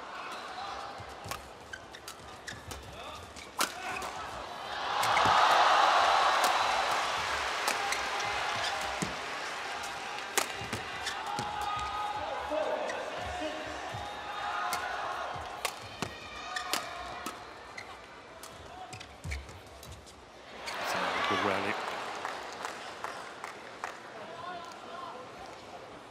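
Badminton play in an arena: sharp racket hits on the shuttlecock and shoe squeaks and footfalls on the court. The crowd cheers loudly about five seconds in and again briefly around twenty seconds in.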